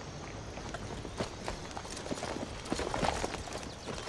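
Hooves of saddled horses clip-clopping at a walk as they are led across a yard, in irregular strikes.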